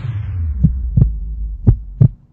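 Heartbeat sound effect over a low hum: two double thumps, lub-dub, about a second apart, with the street sound dropped away.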